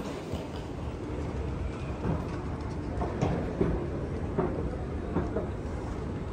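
Wheeled suitcases rolling over a tiled floor: a steady low rumble with scattered sharp clacks.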